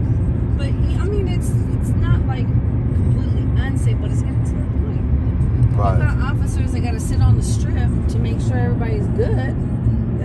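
Steady low road rumble of a moving car, heard from inside the cabin, with faint, indistinct talk now and then.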